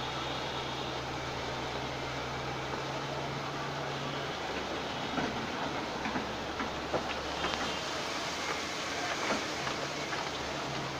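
Hitachi tracked excavator's diesel engine running with a steady low drone that drops away about four seconds in, over a haze of road traffic. Scattered clanks and knocks follow from about five seconds in as it digs.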